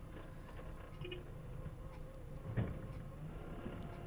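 Faint, steady low rumble of a forklift's engine idling, heard from the operator's cab while it waits, stuck in soft ground, to be towed out by an excavator. A single soft knock about two and a half seconds in.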